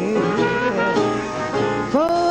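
Small traditional jazz band playing an instrumental fill between sung lines: cornet over piano and string bass, with a bass saxophone, several lines moving at once.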